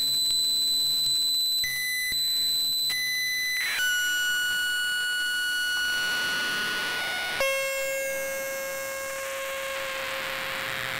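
Eurorack modular synthesizer sounding a steady high electronic tone with short blips, which steps down to a lower pitch about four seconds in and lower again about seven and a half seconds in, with a hiss of noise swelling behind it.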